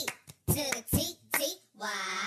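A woman's voice making short vocal sounds that are not words, with two sharp hits, such as hand claps, about half a second apart near the middle.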